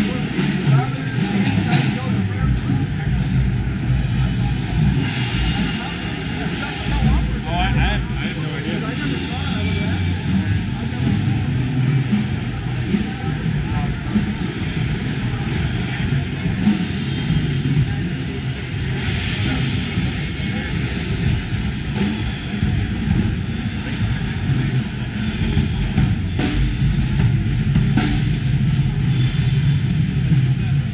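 Loud, busy hall din: many drums and cymbals being played at once at different booths, mixed with crowd chatter, a constant clatter of hits without a single steady beat.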